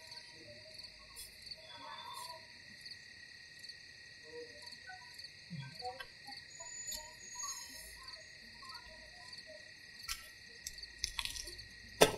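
A steady chorus of crickets chirping at several high pitches, with a few faint scattered rustles and clicks, a small cluster of clicks near the end.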